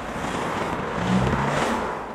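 Two cars driving past one after the other, with engine and tyre noise. The sound swells to its loudest about one and a half seconds in as the second car passes, then fades.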